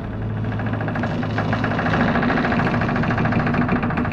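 A loud, fast, even rattling noise, engine-like, sets in suddenly over a low droning ambient music bed.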